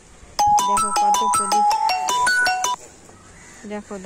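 A short electronic melody like a phone ringtone: a quick run of clear beeping notes, about six a second, jumping between a few pitches. It starts about half a second in and stops shortly before three seconds.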